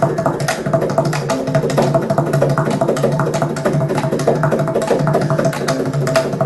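Carnatic ensemble of chitraveena, violin and mridangam playing together, with a dense, fast run of mridangam strokes over held melodic notes.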